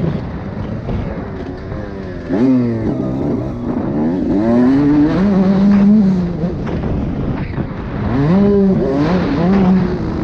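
Motocross bike engine, heard from the rider's helmet, revving up and down as it rides the track. The revs fall near the start, climb sharply about two and a half seconds in, hold high around five to six seconds, then drop and climb again near eight seconds.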